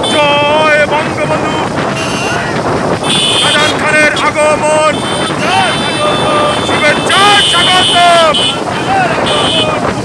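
Men's voices shouting over running motorcycle engines, with wind on the microphone. A high steady tone sounds briefly about three seconds in and again around seven seconds.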